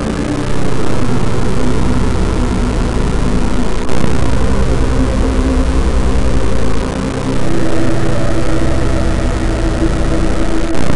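Heavily distorted electronic music: a loud, dense drone with a deep low end. It shifts in sections every few seconds, with short dips in level near the start, about four seconds in and about seven seconds in.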